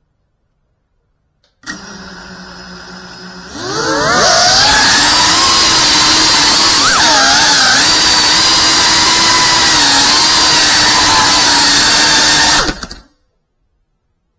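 A 3.5-inch FPV quadcopter's brushless motors: a steady hum at low speed, then a rising whine as they spin up to a loud, steady high-pitched whine with a brief wobble in pitch partway through. The sound cuts off suddenly near the end.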